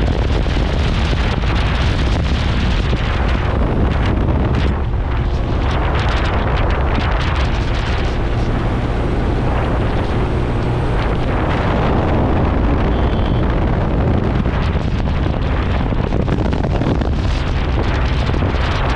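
Heavy wind buffeting the microphone of a moving motorcycle, with the motorcycle's engine running steadily underneath.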